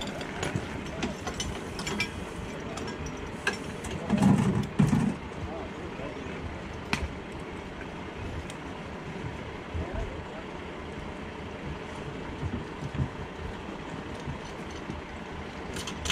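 Firefighters coupling hard suction hoses: scattered sharp metallic clanks of the hose couplings over a steady low rumble, with one louder low burst about four seconds in.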